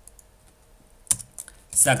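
Computer keyboard keystrokes: a few scattered key clicks, faint at first, with the sharpest about a second in, as a new line of code is opened and typed.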